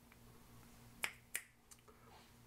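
Two short, sharp clicks about a third of a second apart, followed by two fainter ticks, over a low room hum.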